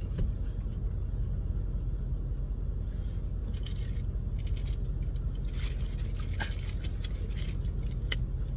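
A person biting and chewing a crisp, watery lillypilly fruit, with a run of short crunching clicks from about three seconds in. A steady low rumble of the car cabin sits under it.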